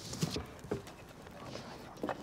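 Campfire crackling: a few scattered sharp pops and snaps from burning wood over a low background.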